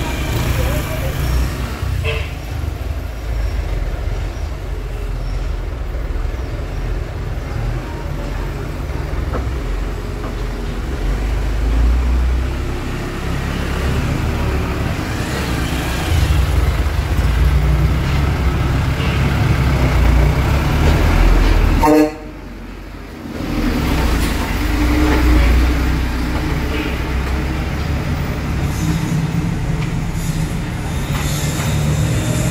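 Truck engine running with a steady low rumble while creeping through slow street traffic. The sound drops suddenly for about a second about two-thirds of the way through.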